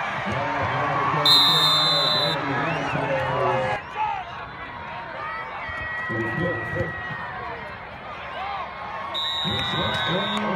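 Football crowd of many voices shouting and cheering, with a referee's whistle blown twice: once for about a second shortly after the start, and again near the end.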